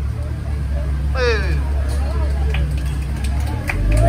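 A motor vehicle's engine running nearby, a steady low rumble that stops just after the end. About a second in, a voice calls out briefly with a rising and falling cry, and there is faint talk later.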